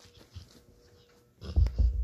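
A pit bull playing with its toys on a bed: faint rustling, then a burst of loud, low thumps about one and a half seconds in as it lunges at the toy.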